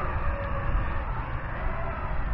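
Visuo XS809S Battleshark toy quadcopter's small coreless motors whirring as it spins up and lifts off, with a faint whine that shifts slowly in pitch. Wind buffets the microphone throughout.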